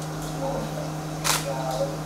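A single camera shutter click a little over a second in, over a steady low hum and faint voices.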